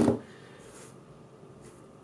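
A single knock as a smartphone is set down on a wooden desk. It is followed by quiet room tone with a few faint taps of hands on the desk.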